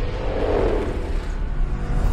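Deep, steady rumble of a spacecraft in a film's sound design, strongest in the bass, swelling briefly about half a second in.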